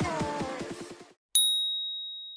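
Background music with a fast beat fading out, then a single high, bell-like ding about a second and a half in that rings on and fades away, a chime marking the change to the next exercise.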